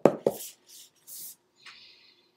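A person sniffing a freshly opened hardback book held up to the nose: two short sharp sniffs, then a softer rustle of paper near the end. A brief voiced murmur comes right at the start.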